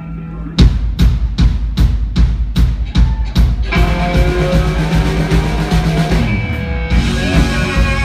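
A live rock band starts a song. The drum kit alone plays sharp, evenly spaced beats, about two and a half a second, from just after half a second in. Amplified guitars and bass come in with held notes under the drums a little over three and a half seconds in, and the full band plays on.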